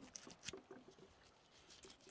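Near silence with faint small clicks and scrapes of a fillet knife cutting along the back of a hogfish, one slightly clearer click about half a second in.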